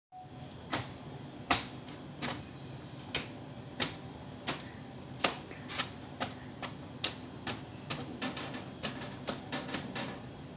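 A dust cloth snapping sharply as it is flapped and slapped against a generator's engine to knock the dust off, about one crack every 0.7 s at first and faster near the end, over a low steady hum.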